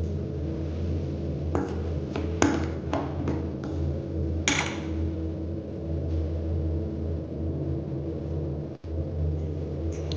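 Metal spoon knocking and scraping against a stainless-steel bowl while stirring a thick yogurt marinade: a handful of sharp clinks, then one longer scrape about four and a half seconds in.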